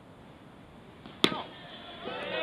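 Baseball bat striking a pitched ball: a single sharp crack with a brief ringing ping, a little past the middle.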